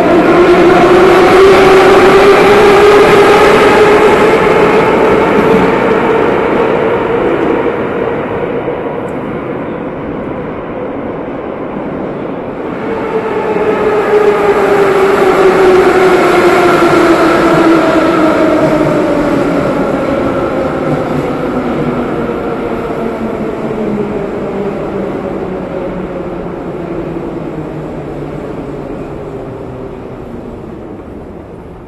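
Metro train's electric traction motors whining: the whine rises in pitch over the first few seconds as the train pulls away, then fades. About halfway through a second loud whine starts and slowly falls in pitch as a train slows, fading away towards the end.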